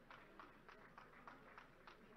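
Faint, evenly paced sharp taps, about three a second, keeping a steady rhythm.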